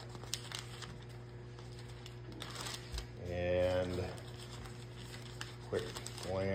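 Paper rustling with a few light clicks over a steady low hum, and a man's voice sounding briefly about three seconds in.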